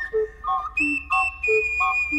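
Instrumental music: an ocarina holds long high melody notes, stepping up to a higher note about a second in. Underneath, a bass note alternates steadily with an off-beat chord.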